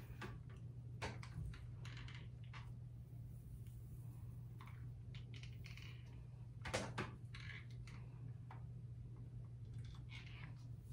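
Faint rustling and light clicks of a flat iron being run through hair and its plates closing, with one sharper click about seven seconds in, over a steady low hum.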